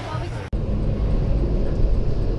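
Outdoor crowd chatter, then after a sudden cut about half a second in, the steady low rumble of engine and road noise inside a van's cab while driving.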